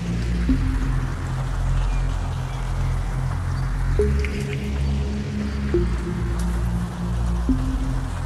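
1990s dance-compilation music with no drum beat: a synth bass and sustained synth chords that change about every second and three quarters, under a slowly swelling and fading wash of noise.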